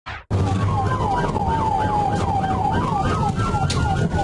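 A short whoosh, then a police car siren heard over steady engine and road rumble. One tone yelps up and down about three times a second while a second tone wails slowly down and then back up.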